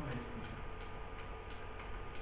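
Faint, light clicks of computer keys being pressed, over a steady low hum in the room.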